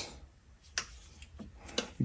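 Leatherman multitool pliers snipping and clicking at a truck's wiring harness: three or four short, sharp clicks, the clearest under a second in and a quick pair near the end.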